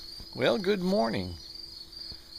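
Crickets chirring in a steady, high-pitched drone.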